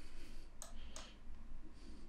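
Two faint, sharp clicks, about half a second and one second in, over a quiet room hum.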